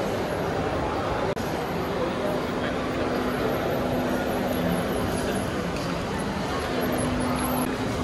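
Busy shopping-mall ambience: a steady wash of crowd hubbub with indistinct voices, and a faint steady hum that comes and goes in the second half.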